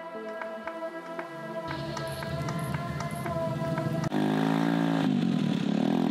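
Background music with a steady beat of repeated notes, changing abruptly about four seconds in to a fuller, lower section.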